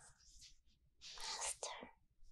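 A woman whispering breathily and unintelligibly right up against a binaural microphone, in short hissy bursts with the loudest about a second in.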